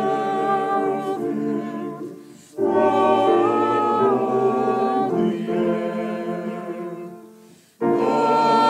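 Small church choir singing in long held chords. One phrase dies away about two seconds in and the next starts a moment later; that one fades out near the end just before another begins.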